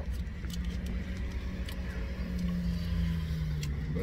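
Steady low rumble of a car idling, heard inside the cabin, with a low steady hum that grows louder past the middle and faint small clicks.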